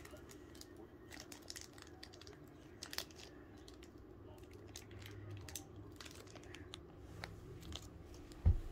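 Foil wrapper of a Pokémon Battle Styles booster pack crinkling and tearing as it is picked open by hand: faint, scattered crackles, one sharper near three seconds in, over a low steady hum.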